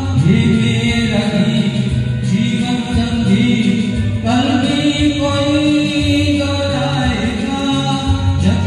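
A man singing a slow Hindi song solo into a microphone, holding long notes.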